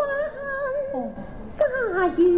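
Cantonese opera singing by a female voice: a held note that slides down in pitch about a second in, then a new note near the end that also bends downward, with the instrumental ensemble behind it.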